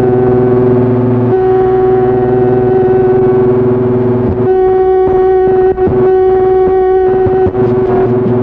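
Casio MT-100 electronic keyboard holding a sustained chord over a steady low bass note, played back from an old cassette recording. From about halfway through, the upper notes pulse in a steady rhythm.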